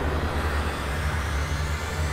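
Deep, steady rumbling drone of trailer sound design, with a thin rising whine building slowly underneath it.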